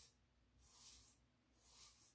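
Hand razor scraping down short stubble on the top of a shaved scalp, with the grain: three faint strokes a little under a second apart.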